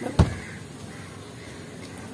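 A single heavy thump about a quarter of a second in, over steady outdoor background noise.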